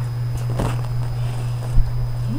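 Soft sounds of people eating at a table over a steady low electrical-type hum: a brief scrape or rustle a little after half a second in, and a single dull thump on the table just before the end.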